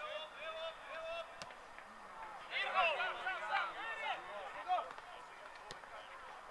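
Footballers' voices shouting and calling to each other across the pitch during play, loudest in a burst of several voices around the middle, with a couple of faint sharp knocks.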